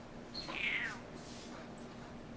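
House cat giving one short, high meow that falls in pitch, starting about half a second in: a complaint over its food.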